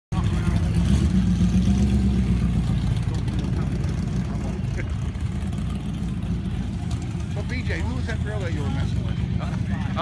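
A car engine idling with a steady low rumble, loudest in the first few seconds, while people talk in the background during the second half.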